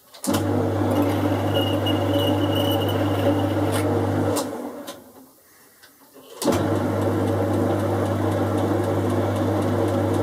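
Boxford lathe's motor and gear train running in two runs of about four seconds each, with a short pause between, over a steady low hum: a screw-cutting pass on a phosphor bronze nut, then the lathe run back with the half nuts still engaged to return the tool to the start.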